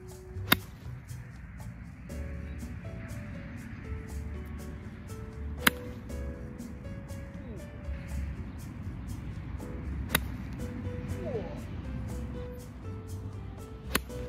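A seven iron striking golf balls off turf: four sharp, crisp hits about five seconds apart, the last at the very end. Background music with a steady beat plays underneath throughout.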